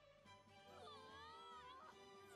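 Very faint, turned-down anime episode audio: a high, gliding pitched sound that rises and falls, starting well under a second in.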